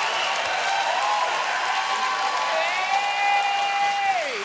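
Studio audience applauding and cheering. In the second half one voice holds a long whoop over it.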